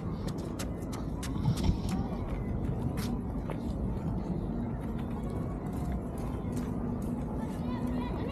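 Footsteps and pram wheels clicking irregularly on paving stones over a low outdoor rumble, with voices in the background.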